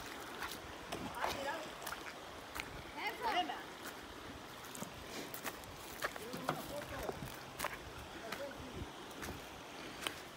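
Faint, distant voices talking in snatches, with scattered small clicks and knocks over a faint steady background hiss.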